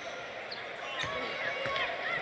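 Basketball dribbled on a hardwood court: a few separate bounces over faint arena background noise.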